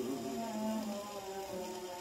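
Soft orchestral accompaniment from a 1949 shellac 78 rpm record, held low notes between sung phrases, played back through a phonograph's gooseneck tone arm with a steady surface hiss.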